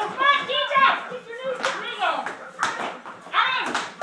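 People's voices, without clear words, over several sharp thumps or slaps, most of them in the second half: people jumping and landing on a hard floor during a high-intensity workout.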